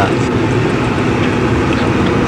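Steady road and engine noise of a moving taxi, heard from inside the car's cabin as an even, low rush.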